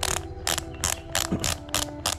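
Rotary ratchet lace dial on a Santic cycling shoe clicking as it is twisted, about five clicks a second, winding the newly refitted lace tight.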